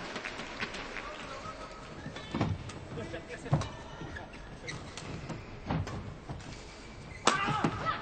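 Badminton rally: sharp hits of rackets on the shuttlecock and shoes squeaking on the court over the steady hum of an arena. Near the end a louder burst of voices comes as the point is won on a smash.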